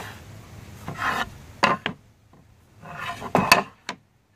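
Hardwood cutting boards being handled: scraping as they slide over one another, and several sharp wooden clacks as they knock together, the loudest near the end.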